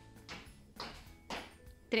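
Sneakers landing on a tiled floor in three two-footed hops, about half a second apart, over quiet background music.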